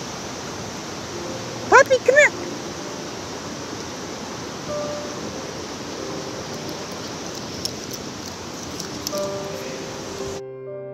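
Steady rushing noise of running water, like a mountain stream, with a short high-pitched three-part call about two seconds in. Faint musical tones come in toward the end.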